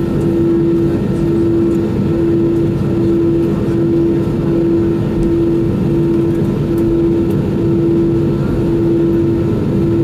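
Cabin noise inside a McDonnell Douglas MD-11 rolling along the ground after landing: a steady, loud low rumble. Over it a humming tone pulses on and off a little more than once a second.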